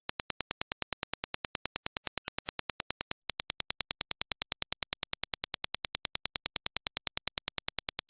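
A rapid, even train of sharp clicks, about eight a second: Dirac test impulses. For about the first three seconds it is the clean reference impulse. After a brief break it changes to the impulse response measured on Focal Elegia headphones, slightly louder and brighter in the treble.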